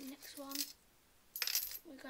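A British coin dropped onto a desk, landing with a sudden metallic clatter and a high ring about a second and a half in.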